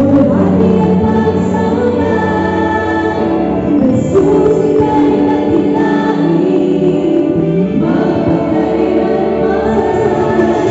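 Worship team singing a praise song in Tagalog, several voices together on long held notes over instrumental backing.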